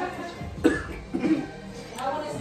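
A man coughing: two short, sharp coughs about half a second apart, the first the louder.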